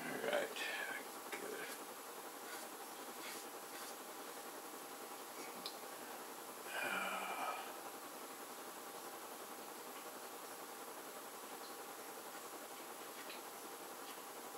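Brief muttered words near the start and again about seven seconds in are the loudest sounds. Between them, a pastel stick makes faint scratches and a few light ticks on the paper over steady room hiss.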